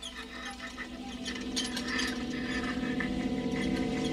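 Horror-film sound effects of insects crawling from a face: a dense crackling and clicking over a low drone that steadily grows louder.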